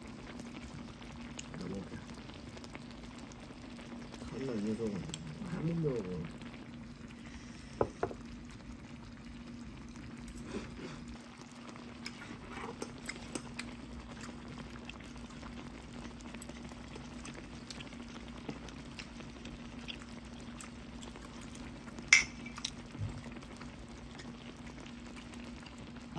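Beef shank hotpot broth simmering in a pot on a portable gas burner, under a steady low hum, with scattered clicks of chopsticks against the pot, the sharpest about 22 seconds in. A voice makes a few short 'mm' sounds in the first six seconds.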